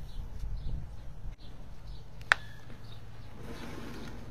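A sharp click about two seconds in and a rustle of leaves near the end as potted nursery plants are handled on a wooden table, over a low steady outdoor rumble with faint bird chirps.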